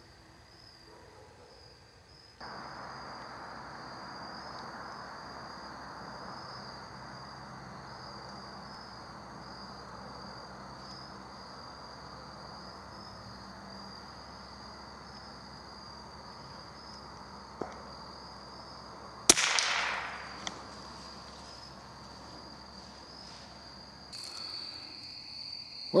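One shot from a Glenfield/Marlin Model 60 .22 rifle about three quarters of the way through, a sharp crack with about a second of echo through the woods. Under it, a steady high-pitched trill of crickets and other insects runs throughout.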